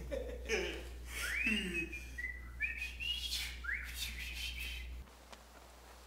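Whistling: several rising, gliding whistled tones, with a few sharp knocks and a steady low hum underneath that cuts off about five seconds in.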